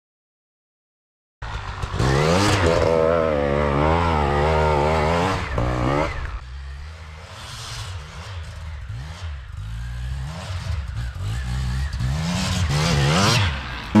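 Beta RR 300 two-stroke enduro motorcycle engine revving hard, its pitch wavering, after a second or so of silence. From about six seconds in it is quieter, the revs rising and falling again and again, and it grows louder again near the end.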